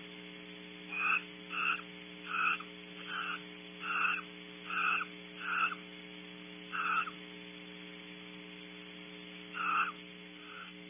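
A frog calling in a series of short croaks, about nine from a second in to seven seconds, with one more near the end, over a steady electrical hum.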